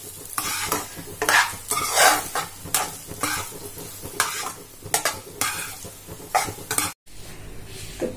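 Spatula scraping and stirring cooked rice in a non-stick kadai while the rice sizzles as it fries in ghee, with irregular scrapes about two to three a second. The stirring stops abruptly about seven seconds in.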